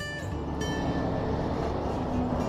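Steady outdoor background rumble and noise, the sort of wind-and-traffic din picked up by a moving camera microphone in an open yard.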